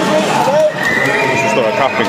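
Voices of people talking in an echoing indoor pool hall, with a thin high tone lasting about a second in the middle.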